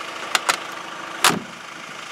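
Door latch of a 1987 Mercedes G-Wagen 240GD worked by hand at its push-button handle: two quick sharp clicks, then a single louder clack about a second later, the G-Wagen's trademark latch sound.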